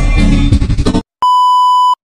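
Music with guitar cuts off abruptly about a second in, and after a brief gap a single steady, high electronic beep, like a censor bleep, sounds for under a second.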